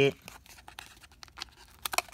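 A cardboard-backed pack of AAA batteries being handled and opened by hand: a run of faint crinkles and small clicks of card and plastic, with a few sharper ones near the end.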